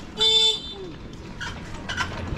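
A vehicle horn sounds once: a single short, loud beep lasting about a third of a second.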